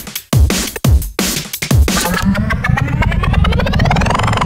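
Drum and bass music from the Launchpad iOS app: heavy beat hits with a bass that glides downward on each one, giving way about halfway through to a steady bass under a rising synth sweep.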